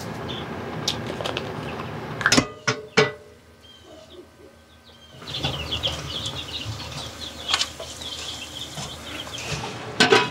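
Chicken breasts coated in a mayonnaise mixture sizzling in a hot nonstick frying pan, a dense steady crackle that starts about five seconds in. Before it, light handling clicks and a couple of sharp knocks as the chicken is seasoned and moved.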